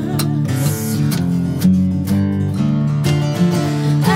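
Three acoustic guitars strumming and picking chords together in an instrumental passage of a rock song, with no singing.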